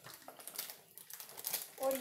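Peanuts deep-frying in hot oil in a kadhai, a fine crackling sizzle. A woman's voice begins near the end.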